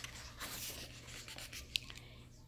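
A picture book's paper page being turned by hand: a soft rustling swish, then one short click near the end.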